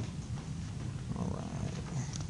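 Room tone: a steady low rumble with a faint hiss above it, and a faint murmur about a second in.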